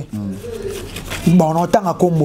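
A person's voice singing slow, held low notes.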